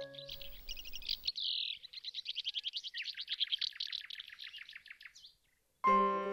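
A songbird singing a fast, high trill of repeated chirps, about ten a second, which stops about five seconds in.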